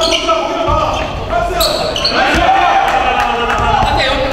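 Basketball game play on a hardwood gym floor: a basketball bouncing, sneakers squeaking and players' voices calling out.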